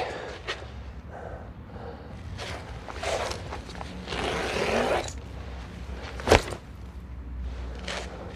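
Rustling and scraping of a bag being handled and filled, with a longer rasp lasting about a second from about four seconds in and a single sharp knock a little past six seconds.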